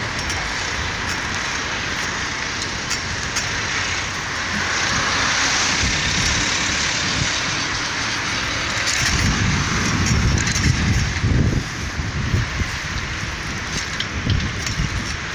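Street traffic noise: cars driving along a town road, one passing by in the middle. Irregular low rumbling comes in a little past halfway.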